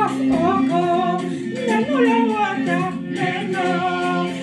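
Gospel praise song sung in Bassa: a singing voice carries a gliding melody over a steady sustained accompaniment.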